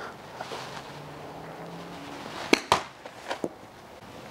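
A golf iron strikes a ball off an artificial turf hitting mat during a slow, controlled practice swing. There is one sharp click about two and a half seconds in, followed quickly by a second knock and then a few fainter taps.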